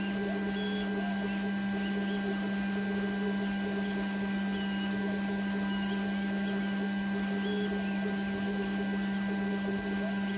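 Glowforge laser cutter running as it cuts 1 mm tag board: a steady hum, with short high whines now and then as the laser head moves.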